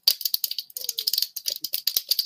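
3D-printed PLA rocket tube, two 0.6 mm walls joined by ribs, crackling and cracking in a rapid, irregular run of sharp clicks as it is crushed by hand, its printed layers giving way under heavy force.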